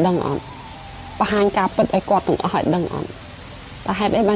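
A person speaking in short phrases over a steady high-pitched hiss.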